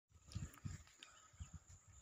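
Near silence, with a few faint, short low thumps.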